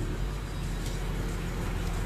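Vehicle engine idling, a steady low rumble heard inside the cab.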